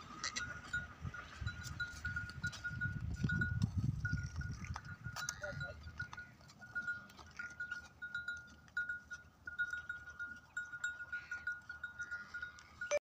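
Small bell on a walking Banni buffalo's neck clinking in short, high pings, a few a second and unevenly spaced as the animal moves, with a low rumble near the middle.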